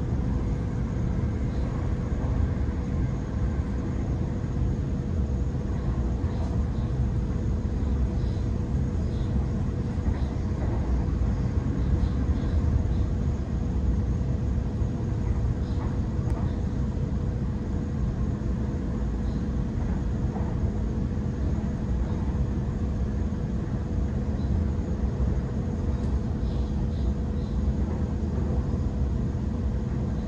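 Steady running noise inside a Sydney Trains Waratah double-deck electric train at speed: a continuous low rumble of wheels on rail with a steady thin hum above it and faint ticks now and then.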